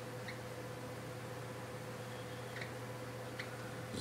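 Dry-erase marker squeaking faintly on a whiteboard in a few short strokes, over a steady low hum.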